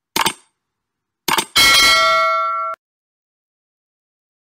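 Subscribe-button animation sound effects: two short clicks, then a notification bell ding that rings for about a second and cuts off suddenly.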